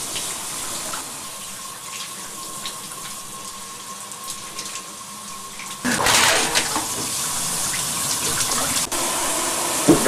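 A shower running: a steady hiss of spraying water that gets louder about six seconds in.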